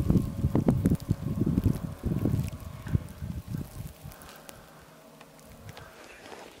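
Wind buffeting the microphone, with rustling and knocks from the camera being handled. It is loud for about the first three seconds and then dies down to a faint hiss.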